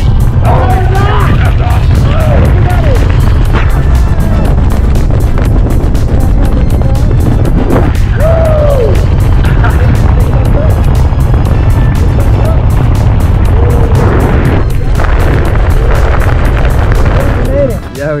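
Heavy wind buffeting on a wrist-mounted camera's microphone during a tandem parachute descent: a loud, steady low rumble. Music and voices are heard over it. The rumble drops away near the end.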